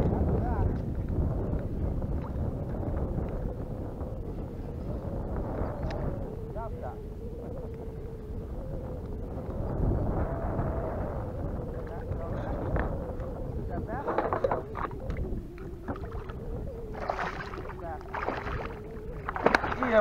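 Wind on the microphone and water around a kayak, with a faint wavering hum through most of it and a few louder, noisier bursts in the second half.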